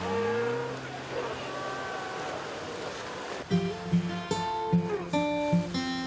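Sea lions calling with drawn-out, gliding moans over splashing waves, then plucked acoustic guitar music starts a little past halfway and takes over, louder than the sea.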